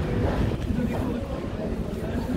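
Underground metro station ambience: a steady low rumble with indistinct voices in the background.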